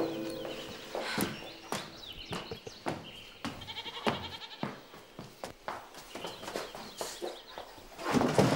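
Scattered light knocks and clicks of someone moving about and handling things, with a short, rapidly pulsing animal call about three and a half seconds in.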